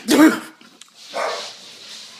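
A man's weird sneeze: two loud, short pitched bursts in quick succession, each rising then falling in pitch, the second right at the start. A softer breathy sound follows about a second in.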